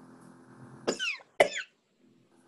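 A person coughing twice, two short harsh coughs about half a second apart over a low room hum.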